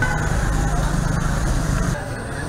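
Street ambience dominated by a steady low engine rumble of road traffic, with faint voices in the background.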